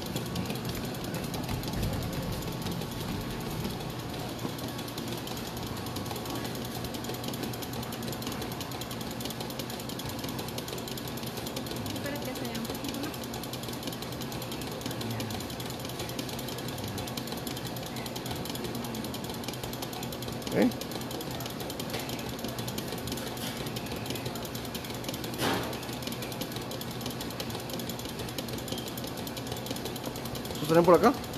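Electric stand mixer running steadily, whipping a meringue until the bowl cools. Two brief, louder sounds cut through, about twenty and twenty-five seconds in.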